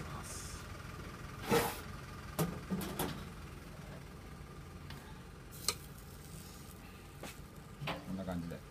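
Kitchen clatter as skewers of marinated chicken are handled and lowered into a tandoor oven: a few short sharp knocks and clinks, the loudest about a second and a half in, over a steady low hum.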